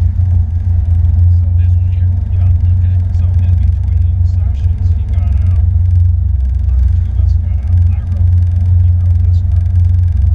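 Porsche 911 GT3's flat-six engine running at low paddock speed, a steady low drone heard from inside the cabin.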